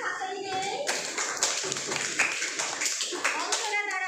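A group of children clapping their hands, a burst of applause starting about a second in and lasting about three seconds.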